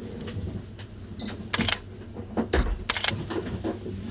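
Sony full-frame mirrorless camera with a Zeiss Sonnar 35mm lens taking two shots about a second and a half apart: each time a short high focus-confirmation beep, then the shutter firing a moment later.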